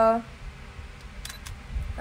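Two faint, quick clicks from a handheld compact digital camera, about a quarter second apart, a little over a second in.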